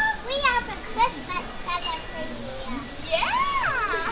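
Excited high-pitched voices squealing and exclaiming without clear words, in short bursts, with one long rising-then-falling cry near the end.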